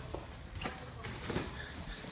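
Footsteps going down a flight of indoor stairs: a few soft, irregular thumps.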